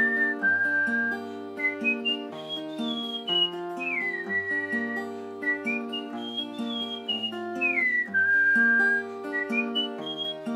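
Acoustic guitar, capoed at the 3rd fret, playing the Em–C–D–G chord progression of the solo, with a high whistled melody over it. The whistled line slides smoothly up and down between held notes.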